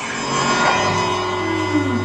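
A rock band's final chord ringing out after the drums stop: electric guitar sustaining through its amplifier with steady held tones and a low hum, and a note sliding down near the end.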